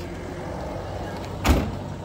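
Steady outdoor background noise with a low rumble, and a single loud thump about a second and a half in.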